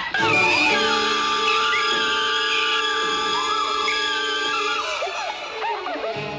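Horror film score: a loud sudden chord strikes at the start and is held steady for about five seconds, with short wavering figures over it near the end.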